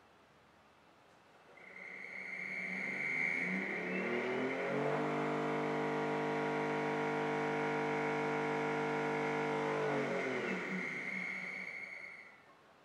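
Nidec BLDC servo motor, shaft-coupled to a second motor through a torque sensor, spinning up under torque-mode current control with a rising whine. It holds steady at its 3000 RPM speed limit, then winds down as the command returns to zero, a steady high tone sounding alongside the whole run.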